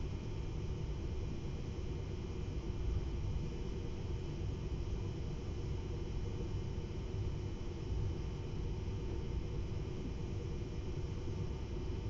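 Steady low rumble of a TER regional train heard from inside the passenger car while it runs at speed, with faint steady higher tones over it.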